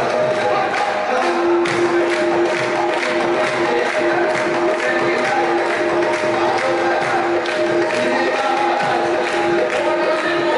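Live qawwali: harmoniums holding steady notes under a group of male voices singing together, over a regular beat.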